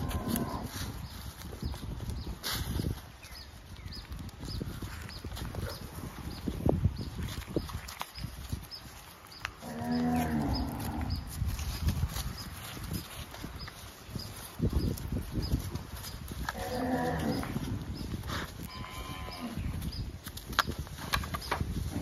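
Brahman cattle mooing: a moo lasting over a second about ten seconds in, another around seventeen seconds, and a shorter, higher call just after it.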